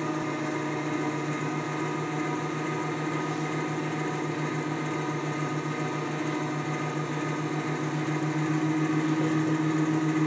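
Van de Graaff generator running: its electric motor and insulating belt give a steady hum that grows slightly louder near the end.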